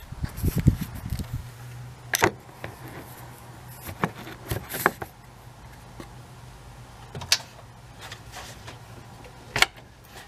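Handling noise as a camera is set down, then about five separate sharp clicks and knocks as metal retaining clips are released from a plastic electric radiator fan shroud, with a faint low hum for a few seconds in the middle.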